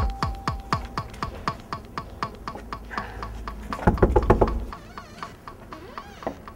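Electronic music fading out, its steady ticking beat thinning away. About four seconds in comes a quick run of heavy bangs, knocking on an apartment door.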